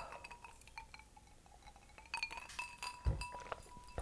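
Chimes ringing: several clear tones start one after another and sound over one another, more of them near the end. There is a soft thump about three seconds in.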